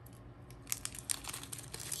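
A small jewellery packet being opened by hand: a run of quick, irregular crackles and rustles that starts about half a second in and grows busier toward the end.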